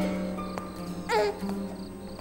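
Soft background score of sustained low notes, with a short gliding note about a second in, over night-time crickets chirping in a steady quick pulse.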